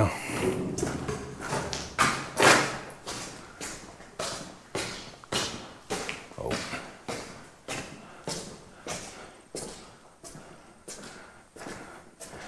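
Footsteps on a gritty concrete floor littered with debris, a steady walking pace of about two steps a second.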